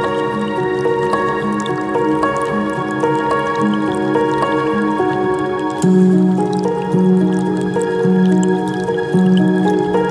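Slow new-age ambient music of long held tones, the low notes swelling about six seconds in, over a gentle creek sound of trickling water and drips.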